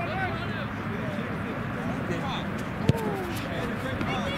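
Overlapping voices of players and spectators calling out across an open field over a steady outdoor background. A single sharp thump comes near the end.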